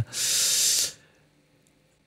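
A man's hissing breath in at a close podcast microphone, under a second long, followed by about a second of silence.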